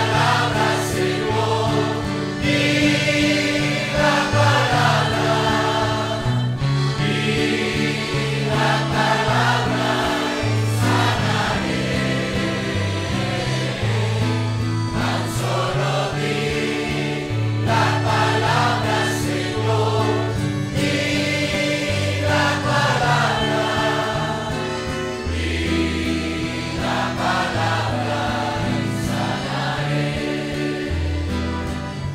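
A congregation singing a worship song together, many men's and women's voices in unison, continuous and full throughout.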